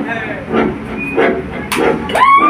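A person's voice calling out over a lull in the music, with a sharp click or clink near the end.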